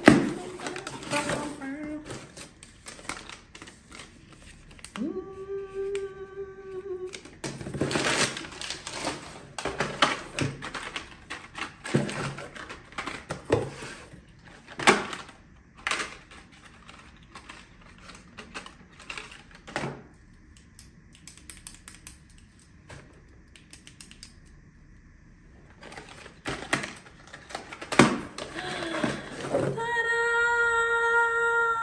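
A cardboard shipping box being unpacked by hand: flaps and packing rustling, with small cardboard boxes lifted out and set down on a wooden table in a series of light knocks and scrapes.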